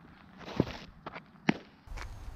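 Softball pitching on a dirt field: two sharp thuds about a second apart, with lighter scuffs of feet on the dirt between them.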